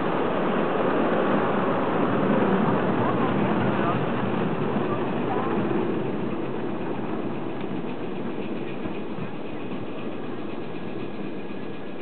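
Ride-on live steam garden railway train running along its track, a steady rumble of wheels and cars on the rails that grows quieter from about halfway as the train moves away.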